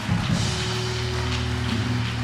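Background music from a live worship band: soft, sustained low chords held steadily.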